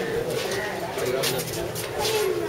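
Pigeons cooing, a low repeated wavering call, with people's voices mixed in.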